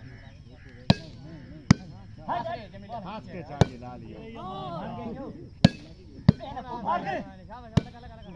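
A plastic volleyball struck by players' hands in a rally: six sharp slaps at uneven intervals, with men's voices calling between the hits.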